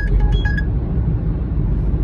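Steady low road and engine rumble heard inside a car cruising at highway speed.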